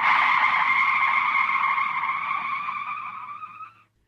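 A tyre-screech sound effect: one long skidding squeal that starts suddenly at full level and fades away over nearly four seconds.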